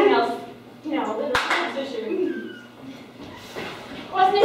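Performers talking on a small stage, with one sharp smack about a second in.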